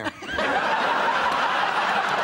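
Studio audience laughing together, rising about a third of a second in and then holding steady.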